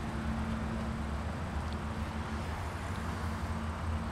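2016 Honda Pilot's 3.5-litre V6 idling steadily: a low rumble with a steady hum over it.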